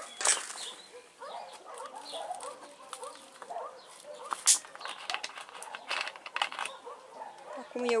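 Plastic watering can being handled while nettle tea is added to it: scattered clicks and knocks, the loudest about halfway through. Faint bird calls in the background.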